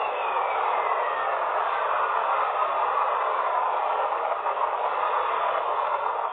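Spacecraft radio recording of lightning on Jupiter, played back as sound: a steady hiss with a faint falling whistle near the start.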